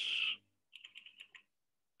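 Computer keyboard typing: a quick run of about half a dozen light keystrokes about a second in.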